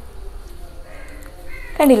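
A crow caws once near the end, a single loud call that falls in pitch.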